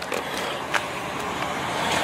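Steady motor-vehicle noise, growing slightly louder near the end, with one light click.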